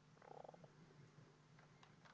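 Near silence: room tone with a faint low hum, and a brief run of rapid soft ticks from a mouse scroll wheel about a quarter second in.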